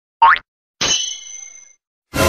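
A short rising cartoon "boing" sound effect, then a sharp high ringing "ding" that fades away over about a second.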